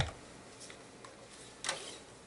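A sharp click, then about a second and a half later a short, thin strum on electric guitar strings that comes out very quiet: the guitar is barely coming through the amplifier, much quieter than usual.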